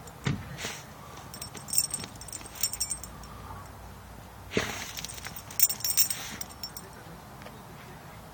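A dog's metal collar tags jingle in a few short spells as it digs with its head down in the hole, the longest spell a little past halfway. Short noisy bursts of sniffing and snorting into the soil come near the start and again in the middle.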